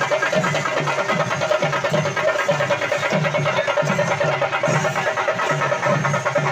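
Chenda drum ensemble playing a fast, dense rhythm, with a low beat about twice a second and a steady tone held above it.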